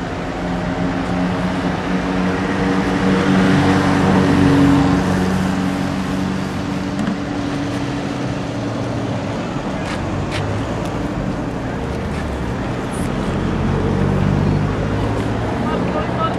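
A motor vehicle's engine running close by, a steady pitched hum that swells louder about four seconds in and again near the end. A few sharp clicks about ten seconds in.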